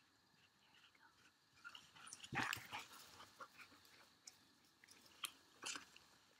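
A dog chewing a treat, faint scattered crunching clicks with a short louder patch about two seconds in, the rest near silence.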